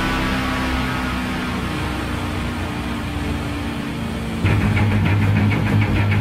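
Lamborghini engine idling with a steady low rumble. About four and a half seconds in, loud rock music with a driving beat cuts in abruptly.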